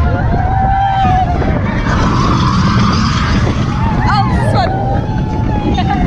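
Roller coaster ride heard from a car of a mine-train coaster: a steady rumble of the train on the track and wind rushing over the camera microphone. Riders scream and whoop over it, with a long held scream early on and rising shrieks about four seconds in.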